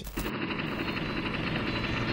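Helicopter rotor sound, a steady fast chop that sets in just after the start.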